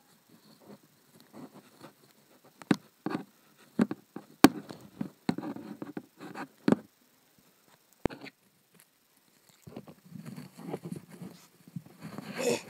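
Plastic toy animal figurines being handled and moved about close to the microphone: irregular light clicks, taps and scraping, with one sharper click a little before the middle.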